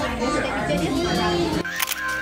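Children's voices talking, then, about one and a half seconds in, the sound cuts off and a single camera shutter click is heard.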